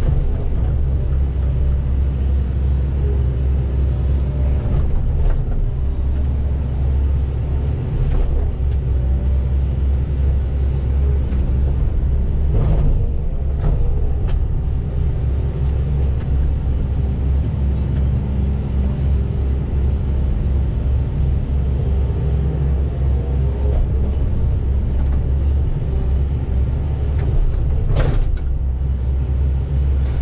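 Volvo EC220DL hydraulic excavator's diesel engine running steadily, heard from inside the cab while the machine digs, a deep constant rumble. A few short clicks and knocks come through at intervals.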